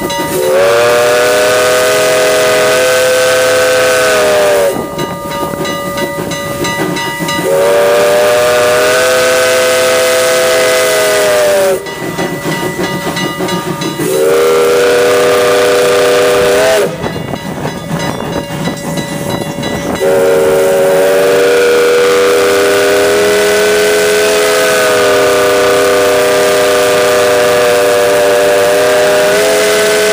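Steam locomotive's chime whistle sounding four blasts, each a chord of several notes: long, long, short, then a final long blast held on. The long-long-short-long pattern is the grade-crossing signal. Steam hiss and running train noise fill the gaps between blasts.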